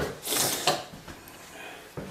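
Rustling and a knock from the camera being handled and moved, in the first second. After that there is only faint room sound.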